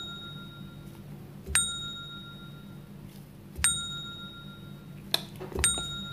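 A spoon clinks against a glass jar while stirring a drink. There are three ringing strikes about two seconds apart, each with a short bell-like ring, and a lighter tap just before the last one.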